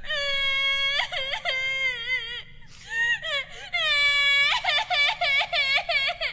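A high-pitched voice wailing and whimpering in long, wavering cries, then a quick string of short sobbing cries near the end: the sound clip of a stream's 'Triggered' meme alert.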